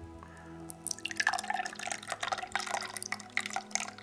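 A faecal sample emulsified in saline solution is poured through a fine mesh strainer into a plastic jug, filtering it for a parasite-egg flotation test. The liquid splashes and patters through the mesh from about a second in.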